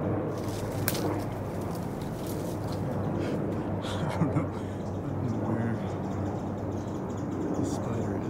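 Steady low drone of a distant helicopter, with a few sharp clicks and light rustling close to the microphone.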